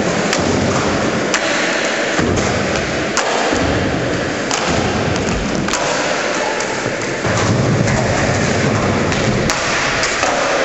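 Skateboard wheels rolling on a concrete skatepark floor close to the microphone, a loud continuous rumble, with several sharp clacks of boards popping and landing.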